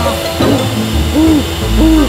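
A cartoon character's voice making short, tired panting groans, each rising and falling in pitch, a few in a row about half a second apart, over background music.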